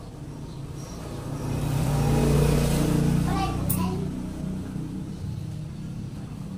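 A motor vehicle's low engine rumble swelling and fading as it passes, loudest a little before the middle, with indistinct voices.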